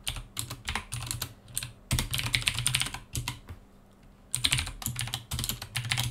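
Typing on a computer keyboard: quick runs of keystrokes in three bursts, with a pause of about a second past the middle, as terminal commands are typed.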